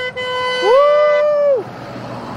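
A horn honking: one steady tone, joined partway in by a second tone that slides up, holds, then slides down and stops about a second and a half in.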